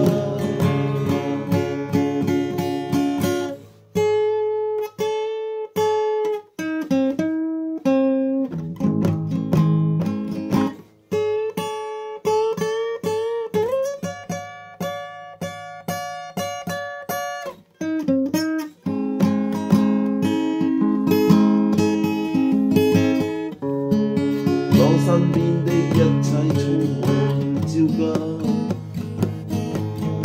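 Acoustic guitar music, picked and strummed, with short breaks between phrases and one longer held passage about halfway through.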